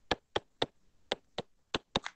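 A stylus tip tapping and clicking on a tablet's glass screen while handwriting: about seven sharp, separate clicks at an uneven pace.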